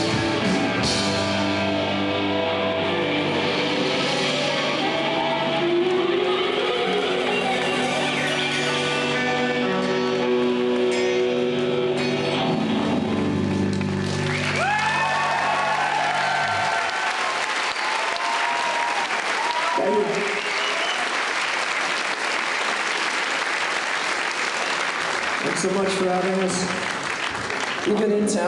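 Live rock band with electric guitars and drums playing the closing chords of a song, which ends about halfway through. The audience then cheers and applauds with shouts.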